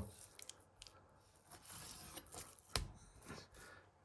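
Faint sounds of a knife slicing through raw venison and scraping on a wooden chopping board, with one sharp tap about three-quarters of the way through.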